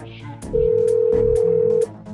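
Telephone ringback tone of an outgoing call waiting to be answered: one long steady beep at a single pitch, starting about half a second in and cutting off just before the end. Background music with a light ticking beat runs underneath.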